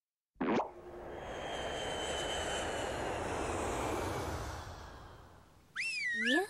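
Editing sound effects: a sudden quick sweep falling in pitch, then a broad whoosh that swells and fades over about four seconds like an aircraft passing, with a faint high whine slowly sinking in pitch. Near the end a cartoon-like rising 'boing' tone slides up.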